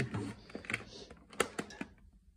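Plastic CD jewel cases clicking against each other as one is slid back into a packed shelf and another is gripped: a handful of sharp clicks, the loudest about one and a half seconds in.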